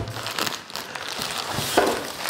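Plastic packaging bag crinkling as it is handled and lifted out of a box, a steady run of small crackles.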